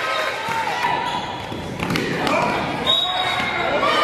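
A basketball bouncing on an indoor court, with voices in the gym around it and a sharp impact about halfway through.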